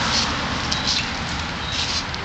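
Hard plastic wheels of a child's pedal tricycle rolling over concrete: a steady, rough rolling noise.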